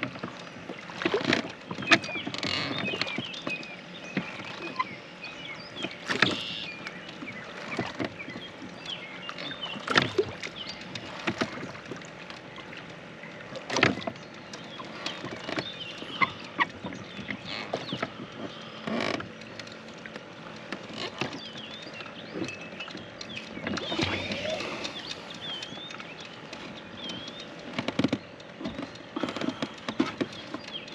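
Oars being worked in a small rowboat: sharp knocks of the oars in their locks every few seconds over the wash and splash of lake water.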